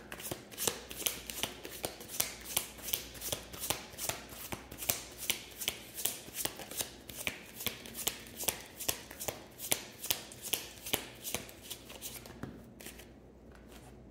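A deck of tarot cards being shuffled by hand, a steady run of card strokes at about three a second. The strokes die away about twelve seconds in.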